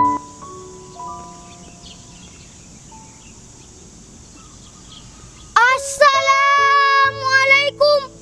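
Soft, spaced instrumental notes trail off over faint background noise. About five and a half seconds in, a boy's voice starts a loud melodic chant with long, wavering held notes, over a low musical drone.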